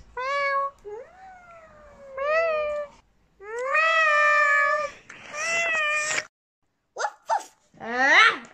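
A girl imitating a cat, giving about five drawn-out meows that rise and fall in pitch, one of them long, followed by two short sounds near the end.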